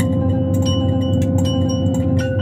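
Small metal bell chimes ringing in a dense stream of rapid strikes, with several high ringing tones held over a steady low drone.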